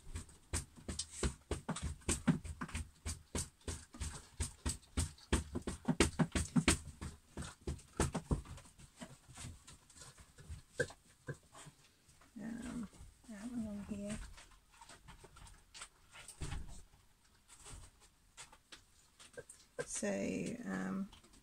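Dogs eating their food, a rapid run of crunching and clicking chews, several a second, that thins out to scattered clicks about halfway through.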